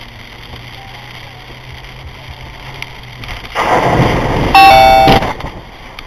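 Car driving on a wet road in the rain with steady tyre and rain noise, then about three and a half seconds in, a loud rush as a sheet of water spray hits the windshield. Near the end of the rush a short loud blaring tone sounds for about half a second.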